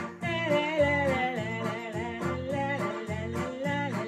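Electronic keyboard playing a slow love-song melody on a lead voice with heavy vibrato, over held chords and the keyboard's own steady rhythm accompaniment.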